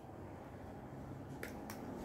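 Two faint, sharp clicks a little over a second in, from fishing pliers and trace line being handled as a knot at the swivel is pulled tight, over a faint low hum.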